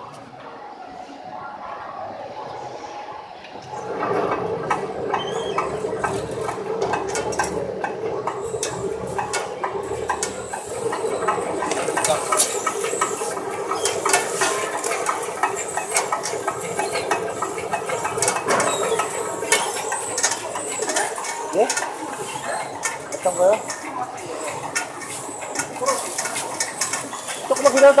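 Fabric inspection machine running a roll of lining fabric through its rollers under a wheeled yard counter: a steady hum with rapid, dense clicking that sets in about four seconds in.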